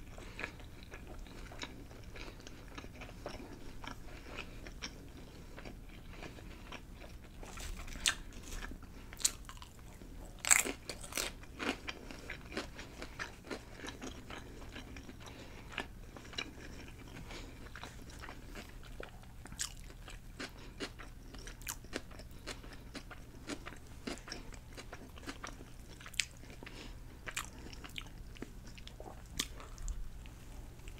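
Close-miked chewing of a loaded club sub sandwich: wet chewing with repeated sharp crunches, the loudest cluster of crunches about ten to twelve seconds in.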